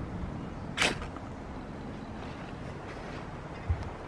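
One quick scrape of a ferrocerium rod about a second in, striking sparks onto a dry bird's nest used as tinder; this strike lights the nest. A steady low rush of background noise runs under it, with a small low thump near the end.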